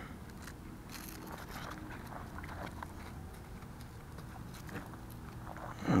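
Faint scattered clicks and rustling of hands handling a GPS speed meter against the plastic front of a radio-controlled truck while fitting it in place.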